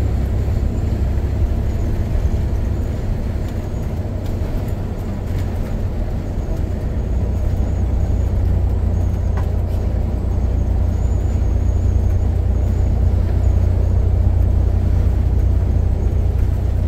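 Steady low road and engine rumble heard from inside a vehicle's cab while cruising at highway speed.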